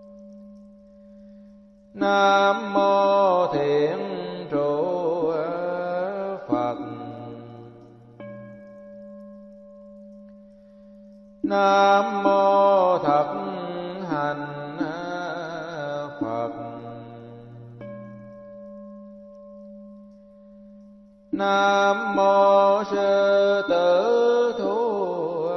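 Buddhist chanting: a voice intones a sung phrase three times, once about every nine to ten seconds, each phrase starting suddenly and lasting four to five seconds. A quieter steady drone of held tones fills the gaps between the phrases.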